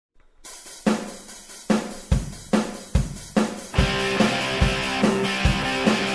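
Rock and roll song intro: a drum kit plays alone, hi-hat with snare and bass drum hits, then the rest of the band comes in a little under four seconds in and the music carries on with a steady beat.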